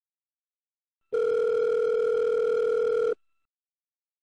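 Telephone ringback tone of an outgoing call ringing on the line: one steady ring lasting about two seconds, starting about a second in.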